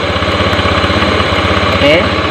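Honda Beat FI scooter's single-cylinder engine idling steadily with an even pulse. Its ignition coil lead is leaking spark to ground, a short that the mechanic blames for the misfiring under throttle.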